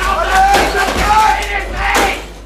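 Live noise performance: several wavering high-pitched tones run through the whole stretch, with a few knocks and clatters from bricks and broken equipment being handled.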